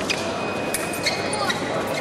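Foil fencers' footwork on the piste: several sharp stamps and knocks with short shoe squeaks, over the steady noise of a large hall.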